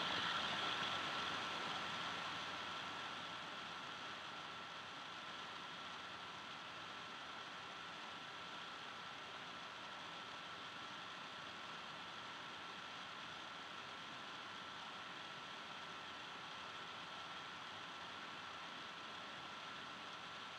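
A faint, steady hiss with a thin, high, steady whine running through it, a little louder over the first few seconds and then even.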